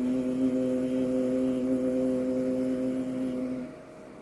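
Male Quran reciter holding one long, steady sung note in melodic tilawah recitation through a microphone, ending about three and a half seconds in.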